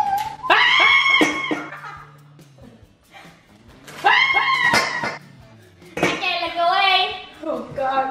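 Very high-pitched voices squealing in three short bursts, over a low steady musical note during the first few seconds.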